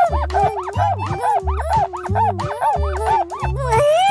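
Upbeat children's background music with a steady beat. Over it runs a high-pitched, sped-up cartoon voice babbling in quick rising-and-falling squeaks, about five a second.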